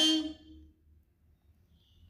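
The end of a woman's spoken word, counting aloud, fading out about half a second in, then near silence for over a second.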